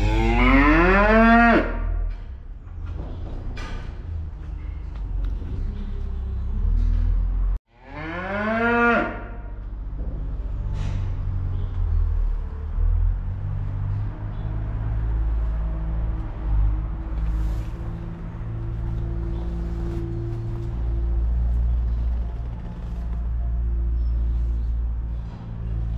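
Cattle mooing in a barn: one moo lasting under two seconds at the start and a second, shorter moo about eight seconds in.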